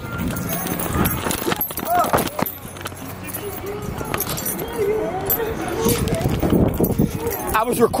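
Indistinct voices of people talking, no clear words, with a few light knocks and scuffs.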